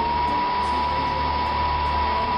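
Miniature wind tunnel's fan running at a steady speed: a steady high whine over a rush of air.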